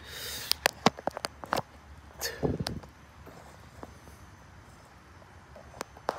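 Handling noise as the phone is set in place: a brief rustle, then a quick run of sharp clicks, a scuff about two seconds in, and one more click near the end.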